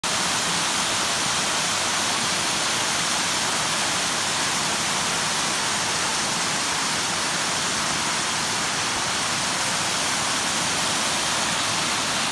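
Small waterfalls cascading over rock ledges: a steady, even rush of falling water.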